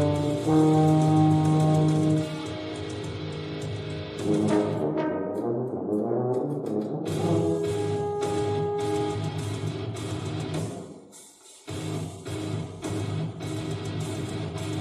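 French horn and tuba playing a contemporary duet: held notes together at first, then a busier passage. The sound drops away briefly about eleven seconds in before short repeated notes resume.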